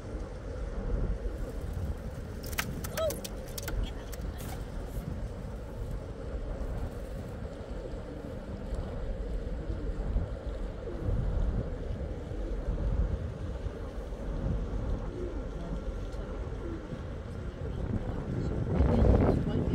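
Bulk carrier passing close alongside the quay: a steady low drone from its diesel machinery with a faint steady hum above it. A few sharp clicks or rattles come a few seconds in.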